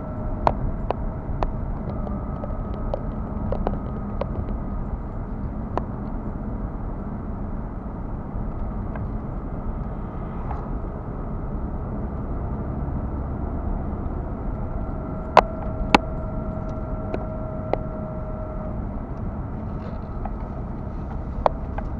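Road and engine rumble heard inside a moving car's cabin, with scattered sharp ticks and knocks from the cabin, two loud ones about 15 and 16 seconds in. A faint steady whine comes in again about 15 seconds in and stops about 19 seconds in.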